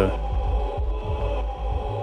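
A held electronic chord from a synthesizer pad sustains steadily over a low bass hum, with no change in pitch.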